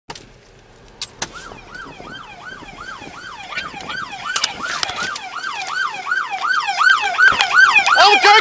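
Police siren on its fast yelp, sweeping up and down about three times a second and growing steadily louder, heard from inside a vehicle's cab. Two sharp clicks come about a second in.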